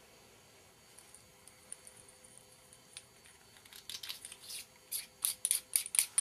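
Small clicks and scraping of an Audio-Technica ATR3350 lavalier mic's battery housing being handled and screwed back together after an LR44 battery is slipped in. Only faint ticks at first, then a quick run of sharp clicks and scrapes in the last two seconds.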